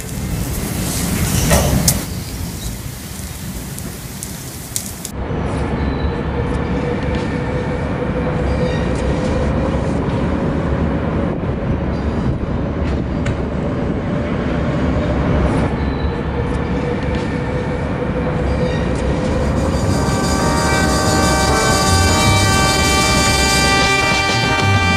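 Steady rumbling noise with a faint held tone underneath, after a loud noisy wash in the first few seconds. Music with a steady pitched pattern comes in over the last few seconds.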